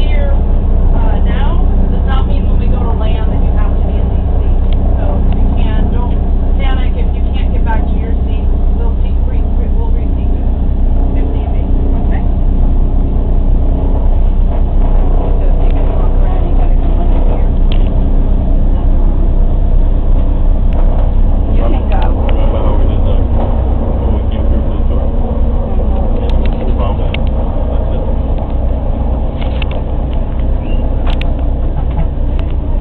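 Four-engine WWII bomber's radial piston engines running steadily, heard loud from inside the B-24's fuselage.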